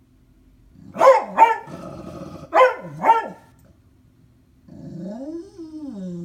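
A dog barking at something outside the window: two pairs of sharp barks, a low growl between them, then a drawn-out cry near the end that rises and falls.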